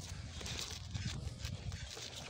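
Faint scuffs and snaps from a group practising karate blocks and punches, a few short clicks about half a second apart, over a low rumble.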